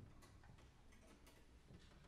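Near silence: concert-hall room tone with a few faint clicks.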